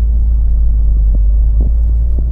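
Steady low rumble of the Abarth 695's 1.4-litre turbocharged four-cylinder and road noise, heard from inside the moving car's cabin.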